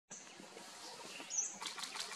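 Forest ambience: a steady high note, then a short rising bird-like chirp, the loudest sound, followed near the end by a patter of small clicks.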